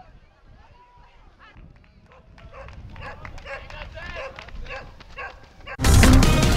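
Indistinct background voices of several people talking, faint at first and growing louder from about two seconds in. Music starts suddenly near the end.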